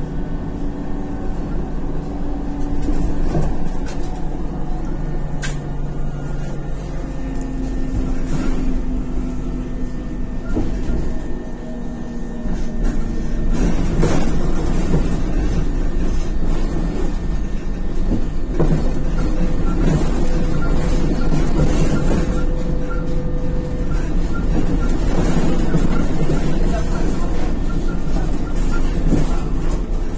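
Ride noise inside an Isuzu Novociti Life city bus under way: the engine's hum shifts pitch several times as the bus changes speed, over a low rumble with scattered knocks and rattles from the body. It grows louder from about halfway.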